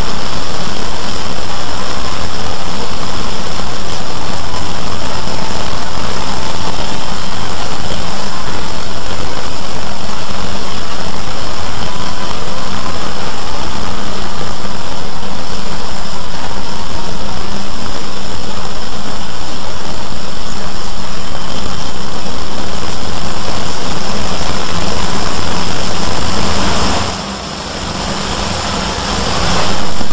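Loud, dense wall of noise from many video soundtracks played over one another at once, so that no single sound can be picked out. Near the end it drops for a couple of seconds, then comes back up.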